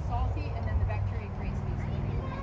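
A faint, distant voice talking over a steady low rumble.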